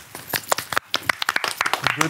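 A small group of people clapping their hands, the claps quick and uneven and not in time with one another.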